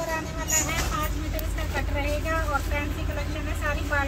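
A high-pitched voice in short, pitch-bending phrases, over a steady low rumble.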